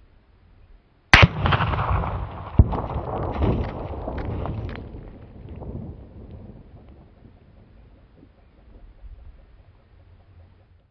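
.22-250 rifle firing a 50-grain V-Max round at a 300-yard target: one sharp crack about a second in, with a second sharp crack about a second and a half later. A long rolling echo follows and dies away over several seconds.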